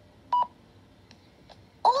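One short, high countdown-leader beep, heard through a laptop speaker, about a third of a second in. Two faint ticks follow, then a voice starts speaking just before the end.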